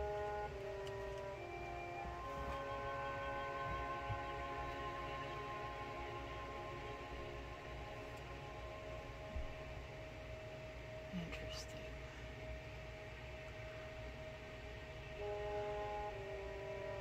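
Quiet background music of slow, held chords. The notes change a few times in the first seconds, then sustain for a long stretch.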